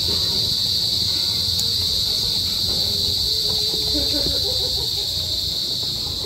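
A steady, high-pitched chorus of crickets trilling without a break.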